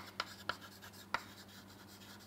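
Chalk writing on a chalkboard, faint: a few short taps and scrapes of the chalk in the first half, the sharpest just over a second in, then quieter strokes.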